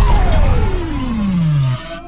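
Dubbed-in Beyblade cartoon sound effect: a loud hit-like onset, then one tone falling steadily from high to low over a deep rumble, cutting off shortly before the end.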